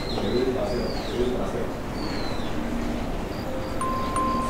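Birds chirping: a few short, arching whistled tweets about a second apart over a low murmur.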